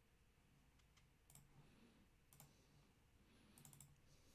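Near silence: room tone with a few faint computer mouse clicks, spaced out at first and a quick run of clicks near the end.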